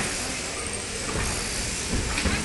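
Steady, even hiss-like noise of electric sheep-shearing handpieces running on the shearing board, with no single clear event.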